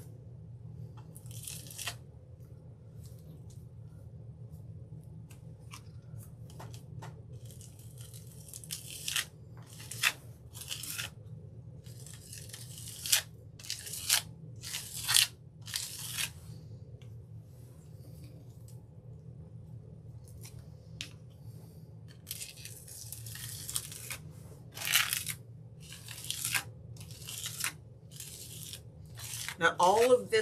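Glass bead gel being spread over a stencil with a hand-held applicator: a series of short, irregular gritty scraping strokes, some louder than others, over a steady low hum.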